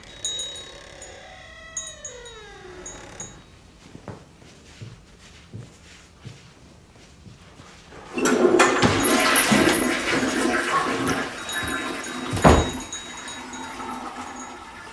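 A door creaking open, one drawn-out creak that rises and then falls in pitch, followed by a few seconds of faint ambience. About eight seconds in comes a loud rushing of water like a toilet flush, lasting about four seconds and ending in a sharp bang.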